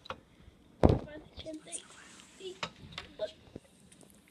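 A single heavy thump just under a second in, the loudest sound, followed by a few light clicks and taps, with quiet children's voices and a short "oh".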